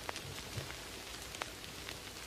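Steady rain, heard from indoors through a window, with a few sharper ticks of single drops.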